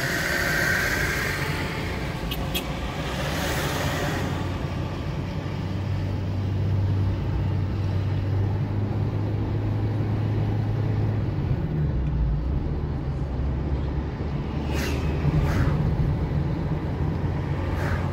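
Car engine and tyre noise from inside the cabin while driving at a steady pace on a paved road, a low steady hum that steps down in pitch about two-thirds of the way through.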